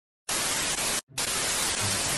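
TV static hiss, the white-noise sound of a dead channel, starting a quarter second in, cutting out briefly about a second in, then resuming.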